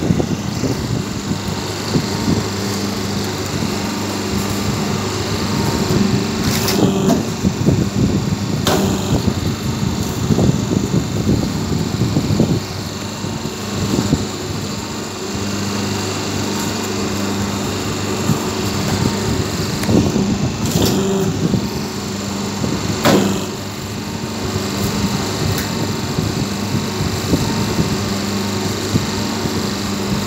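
Semi-automatic hydraulic double-die paper plate machine running: the steady hum of its hydraulic pump motor, with a few sharp knocks as plates are pressed.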